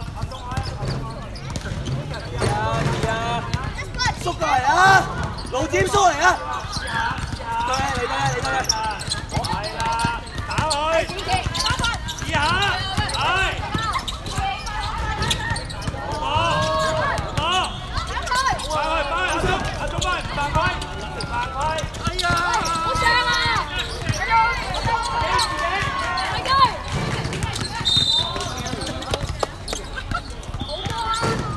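Basketball bouncing on an outdoor court, under several overlapping voices calling out throughout.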